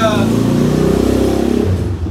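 Motorcycle engine accelerating close by, loud for about a second and a half, then dropping away shortly before the end.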